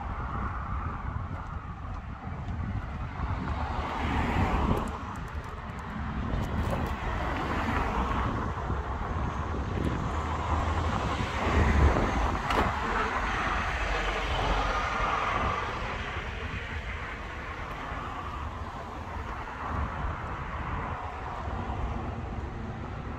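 Road traffic on a wide urban road: cars passing one after another, each a swelling rumble and tyre hiss, the loudest about twelve seconds in.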